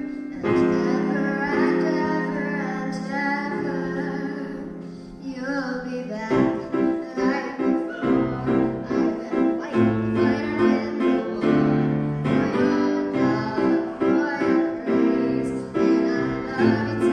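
A young singer's voice through a microphone, accompanied on grand piano. For about the first six seconds the voice holds wavering notes over sustained chords; then the piano moves into steady repeated chords under the singing.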